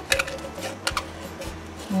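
Scissors snipping through EVA craft foam at the rim of a can: several short, crisp snips, cutting small notches in the foam.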